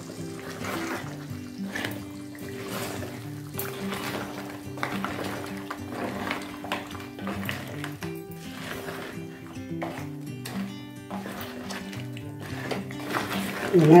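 Background instrumental music with a steady melody, with faint scraping from a wooden spatula stirring crab gravy in a clay pot.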